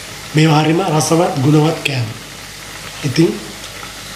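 Hot oil sizzling steadily in a pan as cauliflower vade (fritters) deep-fry.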